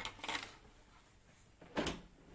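Handling noise as hands move things about on a craft table: a brief rustle at the start, then one short knock near the end.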